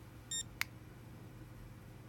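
ISDT BC-8S LiPo battery checker giving one short, high-pitched electronic beep as it leaves its settings menu, followed a moment later by a light click.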